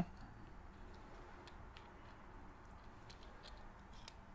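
Faint, scattered small plastic clicks as a small screwdriver prises the circuit board and loose parts out of a Ford Fiesta remote key fob's casing.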